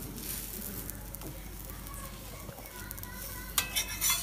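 A stuffed wheat paratha sizzling in butter on a cast iron tawa as a steel spatula presses it. Near the end come a few sharp clicks and knocks as the spatula strikes and scrapes the pan, turning the paratha.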